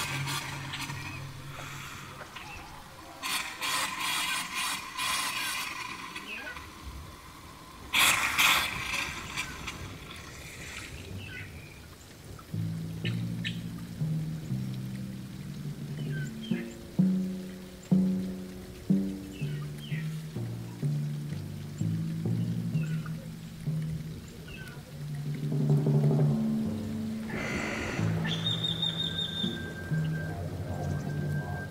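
Water splashing at a stone tank in a few noisy bursts over the first ten seconds. From about twelve seconds in, slow music of low held notes that step from one pitch to the next.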